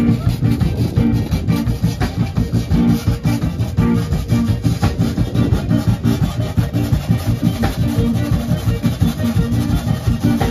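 Live zydeco band playing at full volume: electric guitar, bass, drum kit and accordion over a steady, quick beat, heard through the PA speakers.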